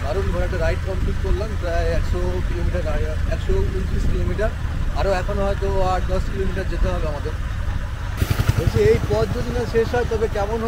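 A man talking over the steady low rumble of a moving motorcycle and wind buffeting the microphone.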